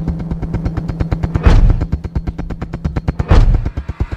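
Dramatic suspense music: a rapid drum roll over a low held drone, broken by a heavy booming hit about every two seconds. It is the build-up cue played while a result is about to be announced.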